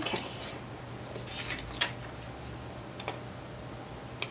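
Small paper cards being handled and positioned: a few brief rustles and light taps scattered about a second apart.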